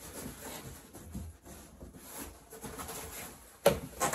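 Cardboard box being handled and folded, with irregular scraping and rustling of the cardboard and a single sharp slap or knock about three and a half seconds in.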